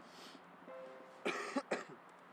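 A person coughing: a quick run of about three coughs a little past the middle.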